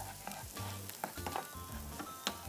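Chopped onion, garlic and thyme sizzling quietly in hot oil in a frying pan, stirred with a wooden spatula that scrapes and clicks lightly against the pan. The aromatics are being softened over medium heat.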